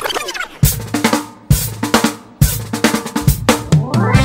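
Drum-led music: loud drum-kit hits over a bass line, about a second apart, with a quicker run of hits near the end like a drum fill.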